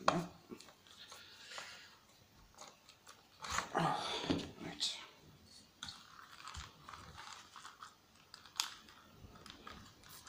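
A hand screwdriver turning screws into a belt sander's plastic housing, with scattered clicks and scrapes of handling; a louder stretch of scraping and rustling comes around the middle.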